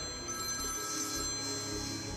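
A mobile phone ringing, left unanswered.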